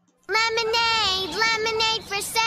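A child singing in a high voice, mostly long held notes, starting a moment in.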